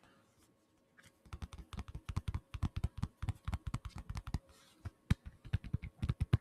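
Fingers tapping rapidly on a wallet held right against the microphone, about eight sharp taps a second. The taps begin about a second in, break off for a moment with a single tap, then pick up again near the end.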